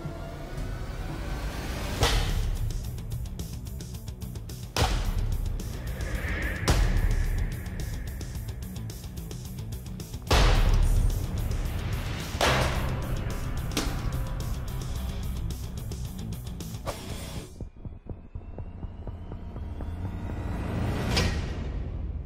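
Seven sharp chopping impacts of a Mesopotamian sickle sword striking armored dummies, spaced a few seconds apart, over dramatic background music. This is a blade strength test, and the sword comes through all seven strikes without breaking. A rising whoosh follows near the end.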